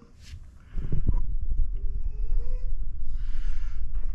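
A dog whining, crying to be let out, in faint thin rising whimpers. Under it, from under a second in, runs a louder low rumble with a knock, from the camera being handled.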